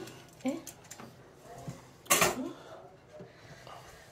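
Pizza cutter wheel rolling through a baked pizza crust in a metal baking tray, with a louder scrape about two seconds in.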